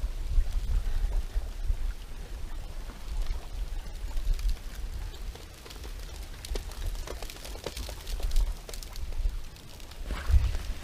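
Water flowing under thin ice, trickling with many small crinkly clicks that come thicker over the last few seconds, over a steady low rumble.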